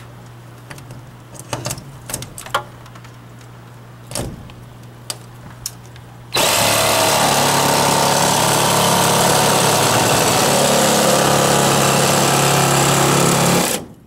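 Cordless jigsaw cutting through a twin-wall polycarbonate greenhouse panel. A few light clicks and knocks come first, then the saw runs loud and steady from about six seconds in and cuts off abruptly just before the end.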